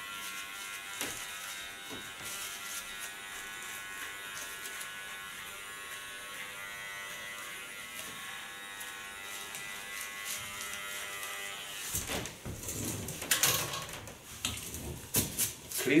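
Electric hair clipper running steadily, cutting short hair at the nape. The hum stops about twelve seconds in, followed by irregular knocks and rustles.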